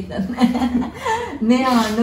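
Conversational speech with chuckling laughter.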